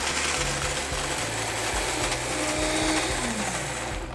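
Vita-Mix blender running at high speed, grinding raw almonds and pitted dates in just a little water into a thick mixture. A steady, even whir throughout.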